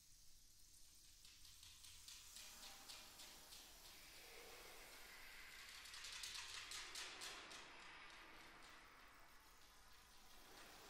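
Near silence in a concert hall, with a faint high rattle that swells about halfway through and fades near the end.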